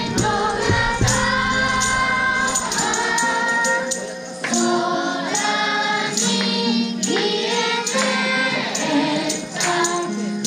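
A group of children singing a song together, with an amplified backing track and percussion under their voices.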